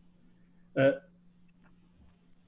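A man's single short hesitation sound, "uh", about a second in, between stretches of quiet room tone with a faint steady hum.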